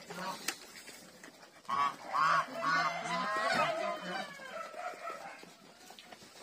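Domestic geese honking: a run of calls starts about two seconds in and fades towards the end.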